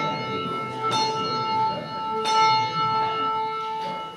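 Church bell tolling: struck about a second in and again about a second and a quarter later, each stroke ringing on and overlapping the last.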